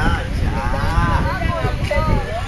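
A person's drawn-out vocal call, its pitch wavering up and down, from about half a second in until near the end, over a low rumble of wind on the phone's microphone.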